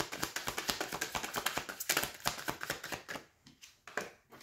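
A deck of tarot cards being shuffled by hand: a rapid patter of card edges clicking against each other, which dies away about three seconds in.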